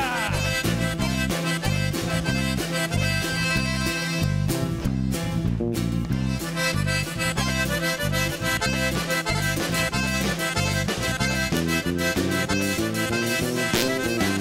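Norteño band playing an instrumental passage. A button accordion leads over a stepping bass line and drums, with no singing.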